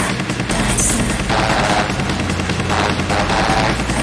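Techno track with a fast, rattling run of percussion hits. The deep bass kick drops out for about the first second, then comes back in.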